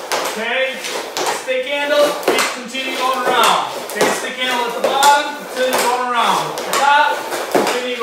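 Hockey stick blade and puck clacking on a tiled floor in quick, irregular taps as the puck is stickhandled around a stick, with a man talking over it.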